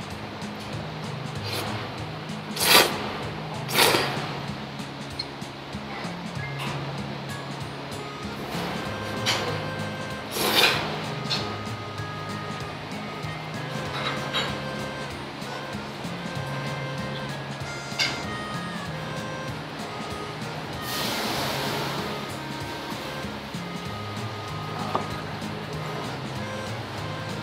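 Background music with a steady bass line, over which thick ramen noodles are slurped in about half a dozen short, loud slurps and one longer one near the end.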